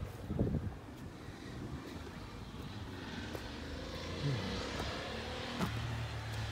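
A few footsteps on a dirt trail, then a distant motor vehicle passing, its sound growing louder in the second half.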